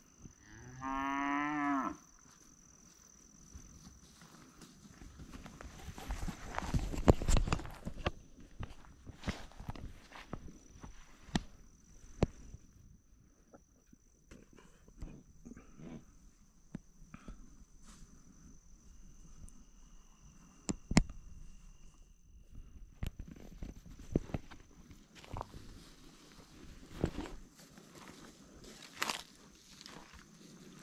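A cow moos once, a loud call about a second and a half long that rises in pitch, about a second in. After it come scattered crunching steps and clicks on dry ground, with a rush of noise around seven seconds in. A thin, steady, high insect tone runs underneath.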